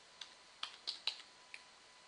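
Faint keystrokes on a computer keyboard: five separate key clicks over about a second and a half as a short number is typed in.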